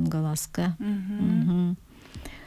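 A woman's voice speaking, with several long syllables held at a level pitch, like drawn-out hesitation sounds; it stops just before the end.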